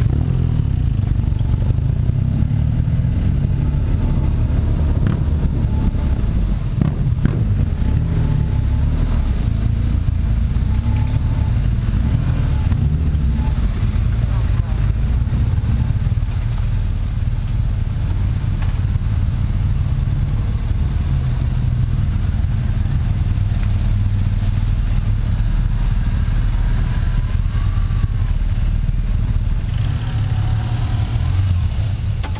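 Motorcycle engines running at low speed, heard from a camera on one of the bikes: a steady low rumble with no sharp revs.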